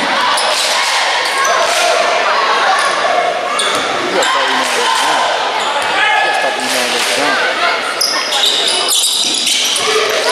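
A basketball bouncing on a hardwood gym floor during a free-throw routine, with the voices of players and spectators echoing around a large gymnasium.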